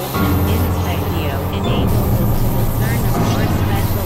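Experimental electronic synthesizer drones in dense layers. Stacked low tones shift abruptly a few times, with short chirping glides higher up.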